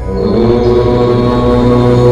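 A low voice begins chanting a long, held "Om" over a steady drone, swelling in over the first half second.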